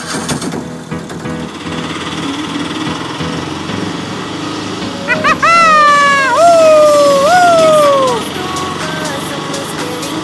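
Auto-rickshaw engine running steadily. From about five seconds in, a loud, high, drawn-out cry jumps up and slides down three times over about three seconds.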